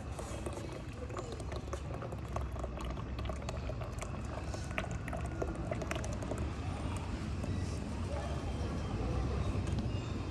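Freshly pressed sesame oil trickling in a thin stream from the spout of a stone oil press (chekku) into a steel pot, over a steady low rumble from the wooden pestle grinding sesame paste in the stone mortar, with many small scattered clicks.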